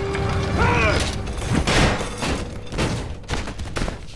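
A body tumbling down steel grating stairs in a film fight scene: a quick run of metallic clanks and thuds, with a film score underneath.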